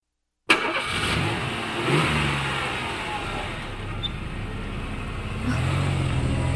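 A BMW saloon car's engine starting about half a second in, revving up briefly and then settling to a steady run as the car creeps forward.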